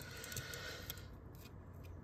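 Faint sliding and light clicking of glossy Topps Chrome chromium trading cards being handled and flipped through.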